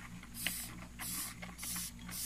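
Madagascar hissing cockroaches hissing: several short, airy hisses in quick succession, about two a second.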